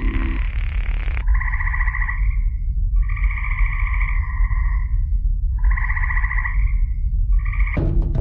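Frog calls: four pulsed trills, the longest about two seconds, the last one short, over a steady low rumble. The first trill comes in after a burst of hiss dies away about a second in.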